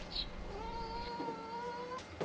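A cat's long, drawn-out meow. It starts about half a second in and is held at a nearly steady pitch for about a second and a half.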